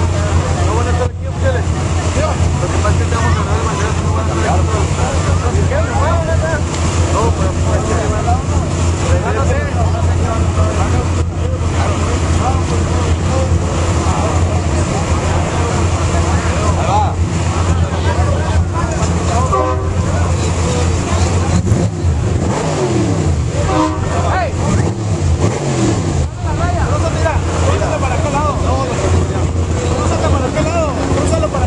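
Trophy Truck race engine idling at the start line with a loud, steady low rumble, its pitch sliding down a couple of times in the second half. A crowd is talking over it.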